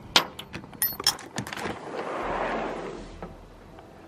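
A door's chrome lever handle and lock being worked: a quick run of sharp metallic clicks and clacks with a brief ring. About two seconds in comes a soft rushing swell, most likely the door swinging open.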